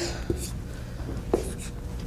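Dry-erase marker drawing on a whiteboard: a few short strokes of the felt tip rubbing across the board.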